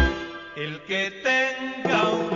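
Salsa music: after a loud downbeat the bass and percussion drop out, leaving only held melodic tones for the rest of the break.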